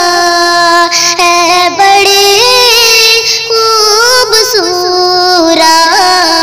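A high voice singing a naat, an Urdu devotional song, drawing out long held notes that bend from one pitch to the next without words being clearly articulated. The voice steps up in pitch about two seconds in and falls back near the end.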